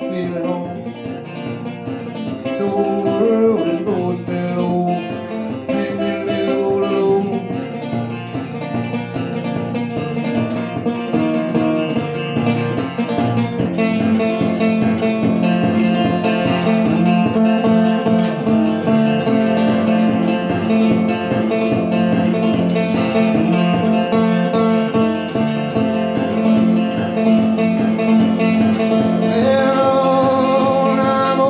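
Metal-bodied resonator guitar played fingerstyle in an instrumental break: steady picked notes over a repeating bass. It grows louder over the first dozen seconds, then holds.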